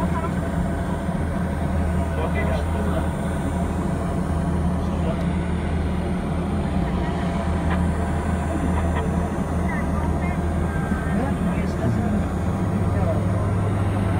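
Steady low drone of a Sky Glider car running along its track, heard from inside the cabin; the hum steps up slightly in pitch about twelve seconds in. Voices chatter indistinctly in the background.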